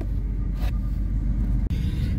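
Low, steady rumble of the car heard from inside its closed boot, with a brief dip near the end.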